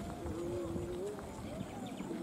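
Voices of a walking group of pilgrims, drawn out and wavering in pitch, over footsteps on a dirt track.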